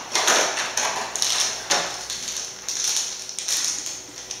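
Clear plastic packaging crinkling and rustling as it is handled, in several irregular bursts.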